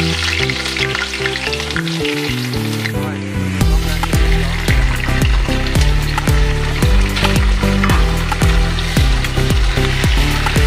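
Onion and raw chicken pieces sizzling in hot oil in an aluminium pot, under background music whose steady beat comes in about three and a half seconds in.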